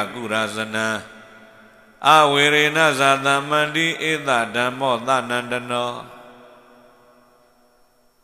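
A Buddhist monk's voice chanting through a microphone in long, drawn-out melodic phrases. One short phrase stops about a second in, a longer phrase runs from about two seconds in to about six seconds in, and then an echoing tail fades away.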